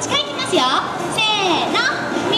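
Children's high-pitched voices calling and chattering.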